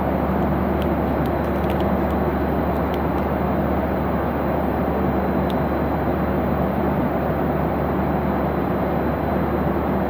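Airliner cabin noise in cruise: a steady rush of engines and airflow with a constant low hum, unchanging throughout, with a few faint ticks in the first few seconds.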